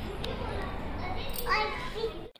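A young boy's voice, a short utterance near the end, over a steady background hiss.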